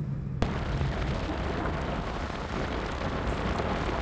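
Car driving on a dirt road: steady crackling tyre noise on loose dirt and gravel, mixed with wind rush. It replaces a quieter low engine hum in the car cabin about half a second in.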